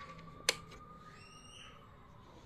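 A single sharp click about half a second in: a finger pressing a control button on a Wings Centrestage 210 Bluetooth soundbar, switching it into Bluetooth pairing mode. A faint steady tone runs underneath.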